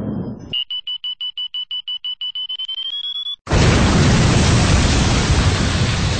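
Countdown sound effect: a high electronic beep repeating rapidly, quickening and rising slightly in pitch near the end, then cut off about three and a half seconds in by a loud explosion blast that slowly dies away.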